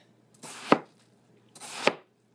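A large chef's knife chopping down through a peeled watermelon twice, each stroke a short cut ending in a sharp tap of the blade on the cutting board.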